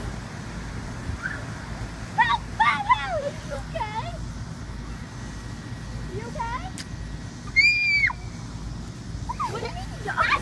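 Children's voices calling and chattering at a distance, with one loud, high-pitched held squeal about three-quarters of the way through, over a steady low rumble.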